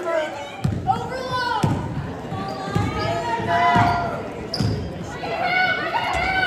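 Basketball bouncing on a hardwood gym floor, a run of low thuds starting under a second in, with players' and spectators' voices echoing in the gym.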